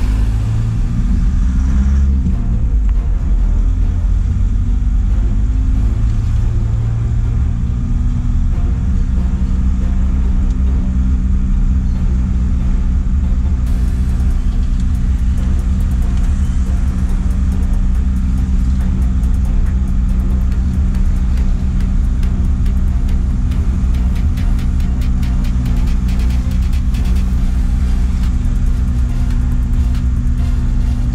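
Light truck's engine heard from inside the cab while driving slowly, its pitch rising and falling briefly at first, then running at a steady speed.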